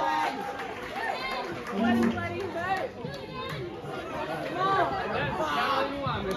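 Crowd chatter: many voices talking over one another in a club as a live song ends.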